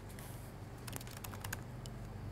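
Laptop keyboard being typed on: a quick run of key clicks about a second in.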